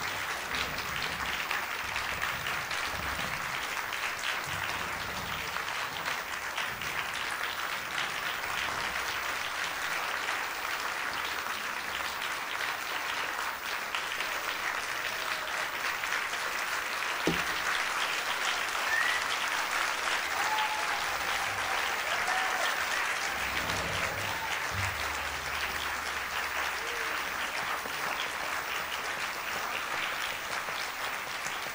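Audience applauding steadily, a long round of applause with no break, and a single sharp knock about seventeen seconds in.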